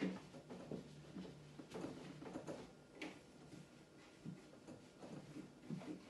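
Irregular light knocks and clicks as the plastic inside of an open fridge is wiped down with a cloth.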